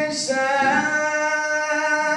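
A man singing solo into a microphone in long, held notes that step up and down in pitch, with a brief 's'-like consonant just after the start.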